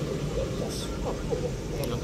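Street background: a steady low traffic rumble with faint talk from people nearby.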